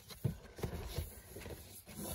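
Hands rummaging in an opened cardboard box of plush dog toys and a card insert, making a few irregular soft knocks and rustles.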